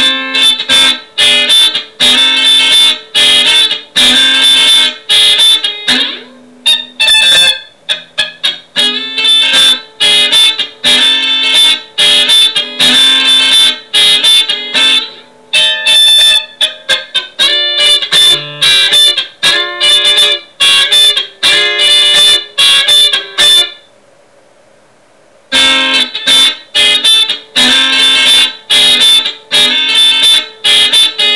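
Electric guitar playing a funk groove in D: short, choppy chord strokes repeating in a steady rhythm. It drops out for about a second and a half near the end, then picks the groove up again.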